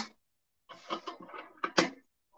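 A few soft knocks and rustles of small items being handled, with one sharper click near the end.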